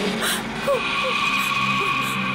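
Eerie horror soundtrack of long, steady high drone tones, with short whimpering cries from a frightened woman repeating every half second or so.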